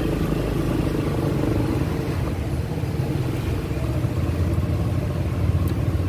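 Motor scooter engine running steadily at low riding speed, an even low drone.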